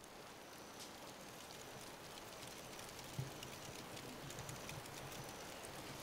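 Faint, steady crackle and sizzle from an irori sunken hearth, with fish and vegetables simmering in sweetened miso on a flat stone over wood embers; a soft knock about three seconds in.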